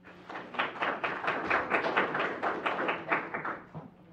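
Brief hand clapping from a small group, at about five claps a second, fading out near the end.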